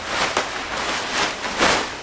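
Nylon tent fabric rustling as it is pulled out and unfurled, in several quick swishes.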